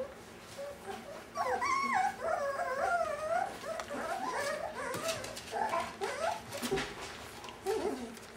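Five-week-old Brittany puppies whining and whimpering in wavering, rising-and-falling cries. The cries begin about a second and a half in and fade out after about six seconds.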